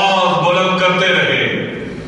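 A man speaking into a microphone, his voice trailing off near the end.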